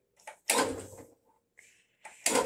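A garden tractor's starter-generator briefly turning over a single-cylinder engine whose cylinder head is off. One short burst of cranking starts sharply about half a second in and dies away within about half a second.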